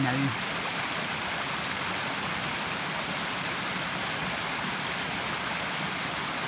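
A small forest stream rushing over rocks, a steady, even rush of water.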